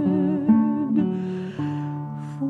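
Acoustic guitar picking slow notes and chords, a new note struck about every half second, under the fading end of a held sung note, in a pause between the soprano's phrases.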